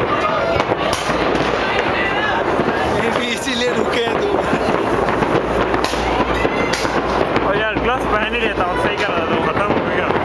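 Fireworks going off in a series of sharp bangs and crackles, spread through the middle seconds, over steady nearby talking.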